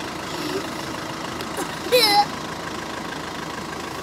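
Young children's voices: a single short, high-pitched squeal from a child about halfway through, with faint murmurs, over steady background noise.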